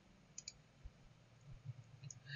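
Near silence, broken about half a second in by a faint computer mouse click: two quick ticks, the button pressed and released.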